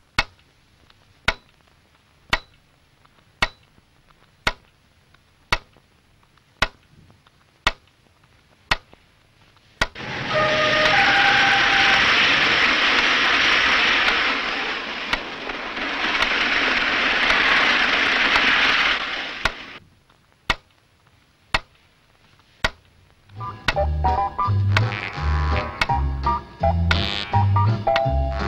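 Sharp, evenly spaced ticks about once a second, broken from about ten seconds in by some ten seconds of loud, steady hissing noise. The ticks come back after it, and music returns near the end.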